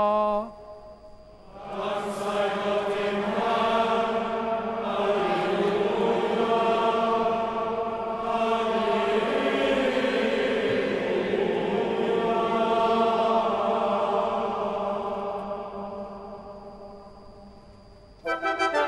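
Congregation and choir singing the chanted response to the dismissal, ending in alleluias, with the cathedral's long reverberation. The singing starts about a second and a half in and dies away a couple of seconds before the end.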